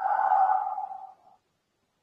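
A man's long, deliberate exhale through the mouth, a breathy 'haa' lasting about a second and fading out, taken on the cue to breathe out during a yoga movement.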